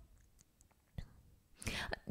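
A pause in a woman's speech: a faint single click about a second in, then an audible breathy in-breath just before she speaks again.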